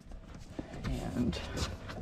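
Faint voices in the background, with a few light knocks.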